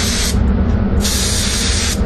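DeVilbiss DV1s mini spray gun with a 1.0 nozzle spraying paint in two short test shots onto paper to check its fan pattern: an air-and-paint hiss that stops about a third of a second in and starts again about a second in for about a second. A steady low rumble runs underneath.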